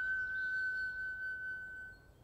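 Flute holding one long high note at the end of a rising run, slowly fading and dying away near the end.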